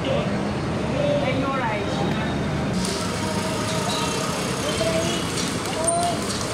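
Busy market street: many voices chattering over steady motorbike and scooter traffic noise.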